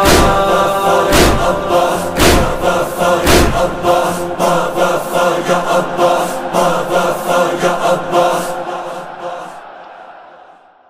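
A group of voices chanting a Muharram lament in unison, held notes over loud percussive beats about once a second, which turn lighter and quicker about four seconds in. The whole sound fades out over the last second or two.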